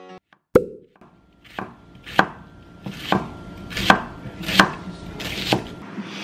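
Knife chopping an onion on a wooden cutting board: about seven separate, slow, uneven strikes, the first coming about half a second in.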